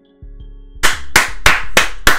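Hands clapping: four sharp claps at about three a second, starting nearly a second in, over background music.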